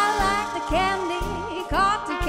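Live swing jazz from a small band: sousaphone and drums keep a pulse of about two beats a second under brass and a singer holding long notes.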